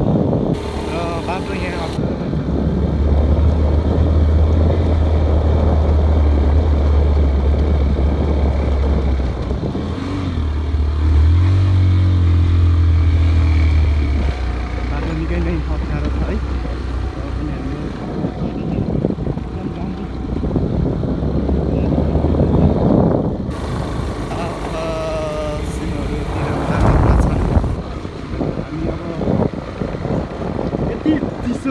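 Motorcycle engine running as a steady low drone, louder at times, with wind on the microphone.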